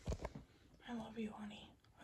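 A few quick knocks as plastic toy horses are handled and set down, followed by about a second of soft, unintelligible murmured voice.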